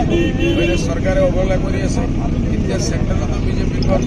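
A man's voice speaking to a gathered crowd, over a steady low background rumble.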